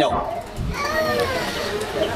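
Speech only: a high-pitched voice with drawn-out, gliding pitch over a low rumble.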